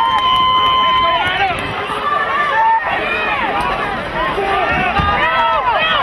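Several voices shouting at once on a lacrosse field during live play, players and sideline calling out over each other. One long held shout comes at the start, and many short overlapping calls follow.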